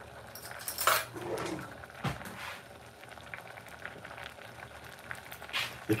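Thick fruit sauce boiling in a stainless steel saucepan, a low steady bubbling, with a couple of light knocks in the first two seconds.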